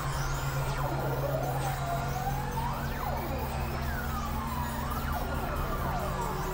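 Experimental synthesizer drone music: a steady low drone under several overlapping sliding tones that swoop up and down in pitch every second or two.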